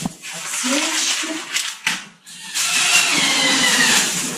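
Plastic grocery bags rustling and crinkling as produce is unpacked. The rustle becomes louder and continuous from about halfway through.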